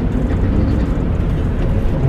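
Rental truck's engine running as it drives slowly, heard from inside the cab: a steady low rumble with road noise.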